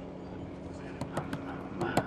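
Steady hum of a train carriage, then from about a second in a man beatboxing and drumming to himself: a quick run of sharp clicks and hits.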